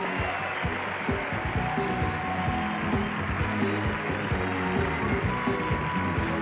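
Game-show theme music with a steady beat, playing the show out to a commercial break over audience applause.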